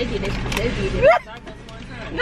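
Paper takeout bag rustling and crackling as it is handled, stopping suddenly about a second in, with a short voiced sound just before it stops and low talk underneath.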